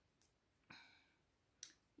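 Near silence in a pause between sentences: a few faint mouth clicks and one soft breath from the woman speaking.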